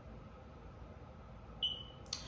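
Quiet room tone, then a short, high, single-pitched electronic beep near the end.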